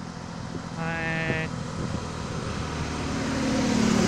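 Road vehicle noise that grows louder toward the end, with a short steady horn-like tone about a second in and a steady low hum near the end.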